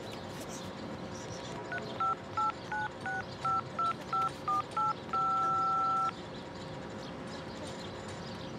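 Mobile phone keypad dialling tones (DTMF): about ten short two-note beeps in a quick series, then one key held for about a second. The tones enter an account code over the phone, a code remembered by ear from the sound of the tones.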